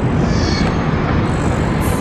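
Steady low rumble of wind buffeting the microphone high on a rooftop, with no distinct events.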